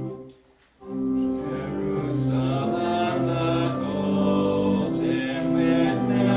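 A hymn played on held, sustained keyboard notes breaks off for about half a second just after the start, then resumes with a congregation singing along.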